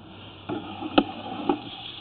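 Sewer inspection camera rig being pulled back through a drain line: short knocks about twice a second over a steady electrical hum.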